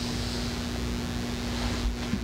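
Steady room noise with a low rumble and a faint steady hum, with a slight low bump near the end.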